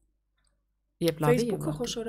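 About a second of near silence, then a woman starts speaking in a conversational voice.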